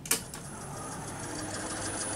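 Two sharp clicks, then a small DC servo motor running again on its restarted bench power supply: a steady mechanical whirr with a constant high whine, growing slightly louder.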